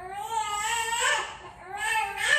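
Baby crying in long wails, one drawn-out cry, a short break, then another starting near the end.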